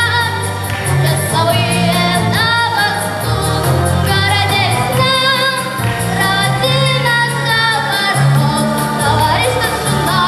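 A boy singing a Russian-language song into a microphone over instrumental accompaniment with a steady beat and bass line.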